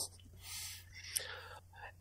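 A pause in a spoken conversation: a faint breath or whisper-like exhale, one small click a little after a second in, and low background noise.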